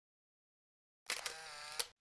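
A short, quiet transition sound effect between narrated posts. About a second in, a click opens a brief steady hiss with a faint tone in it, and a second click ends it.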